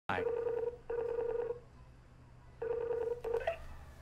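Skype outgoing-call ringing tone on a laptop: two double rings of a steady electronic tone with a pause between them. The second ring is cut short by a brief rising tone about three and a half seconds in.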